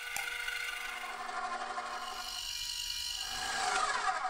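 KitchenAid stand mixer running at low speed, its motor giving a steady whine as the flat beater turns through butter and cream cheese frosting while powdered sugar is mixed in.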